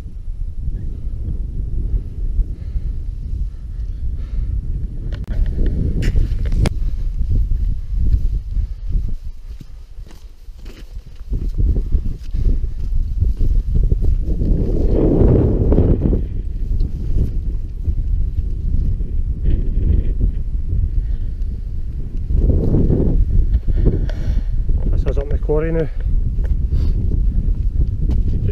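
Wind buffeting an action-camera microphone in a loud, uneven low rumble that eases for a few seconds about a third of the way in. Indistinct voice sounds come through the wind now and then.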